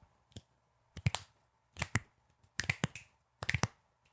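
A person attempting double finger snaps: four quick pairs of snaps, about a second apart, after a faint first click.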